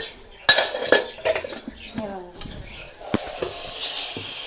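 Metal spoon clinking and scraping against steel pots and a frying pan, with sharp clinks in the first second and another just after three seconds. Hot cooking oil sizzles faintly in the pan near the end.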